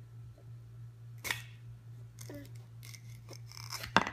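Wooden toy knife knocking and scraping against a wooden pretend-food piece: a short rasp about a second in, a few light clicks, and a sharper clack near the end as the piece comes apart. A steady low hum runs underneath.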